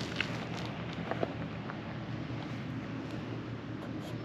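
Steady outdoor wind noise on the microphone, with a few faint clicks.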